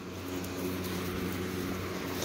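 A steady low engine hum with a few fixed tones, swelling over the first half-second and then holding.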